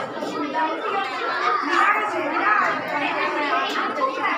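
Overlapping chatter of a group of children's voices talking at once, with no single voice standing out.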